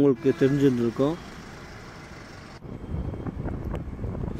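Low rumble of wind and road noise from a moving vehicle, starting suddenly about two and a half seconds in after a faint steady hiss. A voice repeats "super" in the first second.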